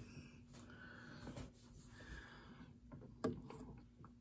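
Near silence: faint room tone with a low steady hum, a few soft faint noises and a small click about three seconds in.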